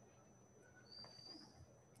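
Near silence: room tone, with a faint, brief high chirp about a second in.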